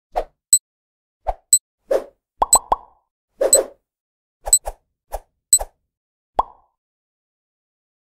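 Cartoon sound effects of an animated countdown: a quick series of short plops and pops mixed with brief high pings, about one or two a second, stopping a little after six seconds in.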